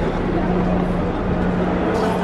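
A steady low hum under the murmur of people's voices, in an echoing underground space.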